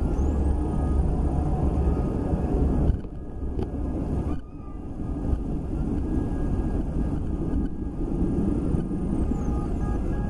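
Outdoor background noise of distant traffic: a steady low rumble that drops briefly about three seconds in and again about four and a half seconds in.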